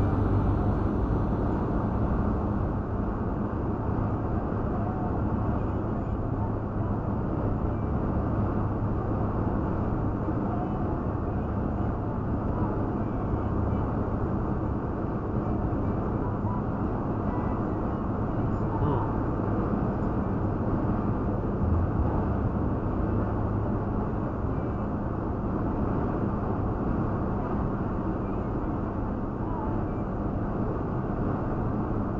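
Steady, muffled road and engine noise inside a Toyota Tacoma pickup's cabin while it cruises at highway speed.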